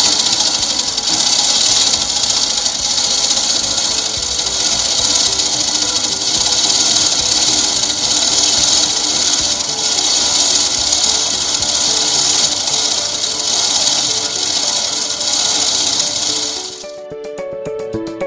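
Manual override chain of a fire roller shutter being pulled hand over hand, the steel chain rattling steadily through its drive sprocket. The rattling stops shortly before the end, leaving background music.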